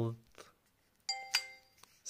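A mobile phone's short electronic chime: several tones sounding together, starting sharply about a second in and fading out within under a second.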